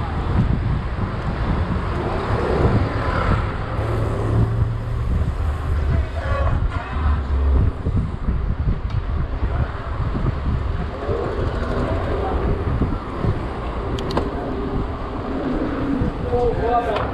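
Wind buffeting the microphone of a camera carried on a moving bicycle, a heavy uneven rumble, with tyre and street-traffic noise beneath it and a sharp click near the end.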